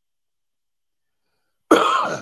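Near silence, then a man's single short, loud cough near the end.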